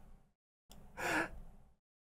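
A woman's single breathy exhale, a half-stifled laugh, about a second in, after a faint breath at the start.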